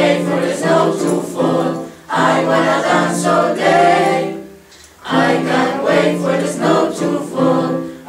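A group of teenage students singing together in chorus, in two phrases with a brief break about halfway through.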